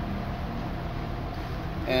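2004 Subaru STI's turbocharged boxer four-cylinder engine running with a steady low rumble, with a misfire on cylinder two, whose ignition coil is not firing.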